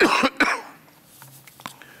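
A man coughing twice in quick succession into a lectern microphone, the coughs coming right at the start and then giving way to quiet.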